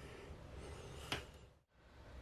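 Faint room tone with one short, soft click about a second in, then a moment of dead silence.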